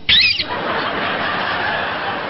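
A brief high-pitched shriek with a wavering pitch just after the start, then a theatre audience laughing together.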